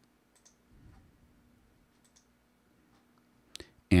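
A few short computer mouse clicks over quiet room tone, the sharpest about three and a half seconds in.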